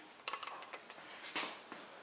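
Light metallic clicks and ticks from hand-adjusting a roller rocker arm on an adjustable pushrod-length checker on a small-block Chevy cylinder head. A handful of short clicks come in the first second and a half.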